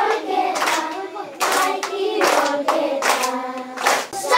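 A group of schoolchildren singing together, with hand claps in a rough rhythm about every half second.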